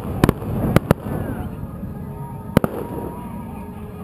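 Aerial fireworks shells bursting: a quick run of four sharp bangs in the first second, then one more a little past halfway.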